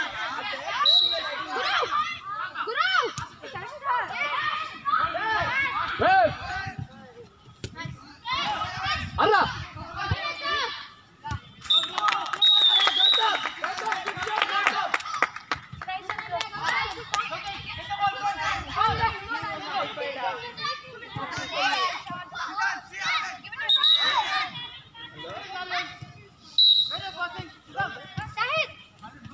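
Children and onlookers shouting and calling out during a youth football match, with occasional thuds of the ball being kicked.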